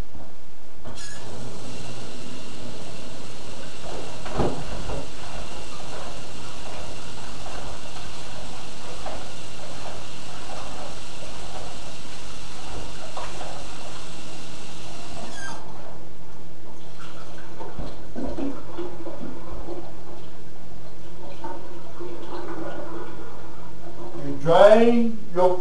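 Tap water running in a sink while pieces of whiting fish are rinsed under it. The water shuts off suddenly about two-thirds of the way through, leaving scattered light handling knocks.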